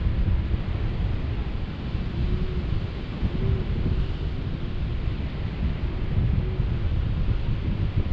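Wind buffeting a camera microphone in paraglider flight: a loud, steady, low rush that swells and eases in gusts, with a faint wavering tone underneath a few times.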